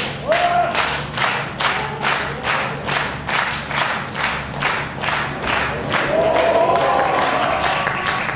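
Crowd clapping fast and in unison, about three to four claps a second. From about six seconds in, a long drawn-out shout rises over the clapping.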